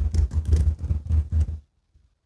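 Typing on a keyboard: a quick run of keystrokes, about five a second, stopping about one and a half seconds in.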